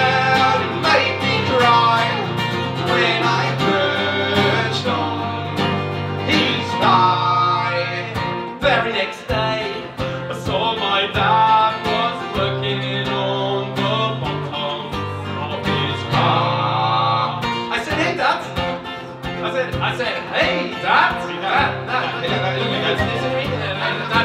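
Live acoustic guitar strummed with an electric keyboard, and a man singing over them.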